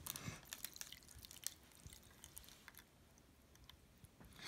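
Near silence: room tone with a few faint clicks and small taps, mostly in the first two seconds, as the glass measuring jug is handled.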